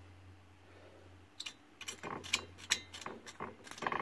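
Steel bolts clicking and clinking against metal as they are handled and threaded into nuts welded onto a homemade steel lathe steady rest. A quick, irregular run of sharp metallic clicks starts about a second and a half in.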